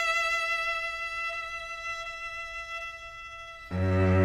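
String quartet: a violin holds one long high note that slowly fades, then near the end a cello comes in loudly on a low sustained note.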